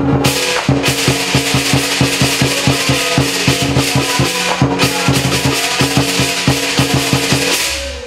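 Lion dance percussion: a Chinese lion drum beaten in a fast, even rhythm with crashing cymbals. It stops abruptly near the end.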